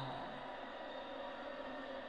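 A man's drawn-out falling "no" trails off at the very start, then only a faint steady background hiss.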